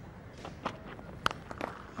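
A handful of short, sharp knocks and thuds over faint ground ambience as a fast bowler delivers and the batsman hooks the ball: the bowler's footfalls and the bat striking the cricket ball. The loudest knock comes just past the middle.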